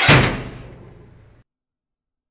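An oven door slamming shut with a thud, the noise dying away over about a second and a half.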